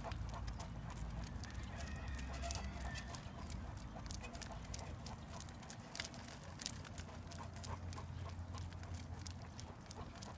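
A Great Dane's feet clicking irregularly on asphalt as she trots, pulling a dog sulky, over the low, steady rumble of the sulky's wheels rolling on the road.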